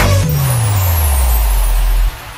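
DJ transition effect in a dance remix: the beat drops out and a deep bass tone glides steadily downward under a wash of hiss, then cuts off suddenly at the end.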